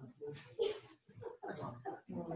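Quiet, indistinct talk with a short breathy laugh about half a second in.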